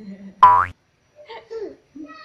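A cartoon 'boing' sound effect: one short, loud twang with its pitch sweeping upward, about half a second in. Quieter voices follow.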